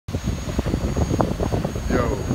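DJI Mavic quadcopter drone hovering over the surf, its propeller hum heard under gusty wind buffeting the microphone and breaking waves.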